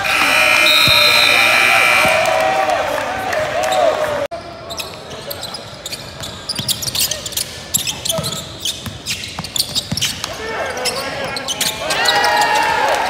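Basketball game sound in a big echoing gym: a ball bouncing and sneakers squeaking on a hardwood court, with players' voices. About four seconds in, the sound breaks off at a cut. The first couple of seconds hold a loud sustained sound with steady high tones.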